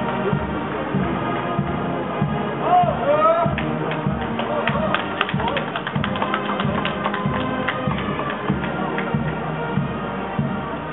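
Band music with a steady beat, over voices of a crowd; through the middle a run of sharp taps or claps sounds over it.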